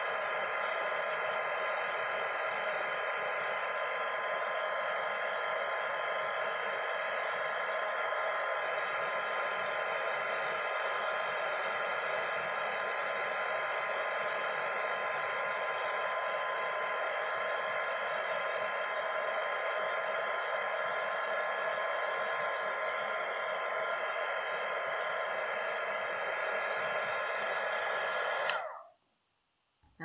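Craft heat embossing tool (heat gun) running steadily, its fan giving an airflow hiss with a steady whine, as it melts embossing powder. It switches off abruptly near the end.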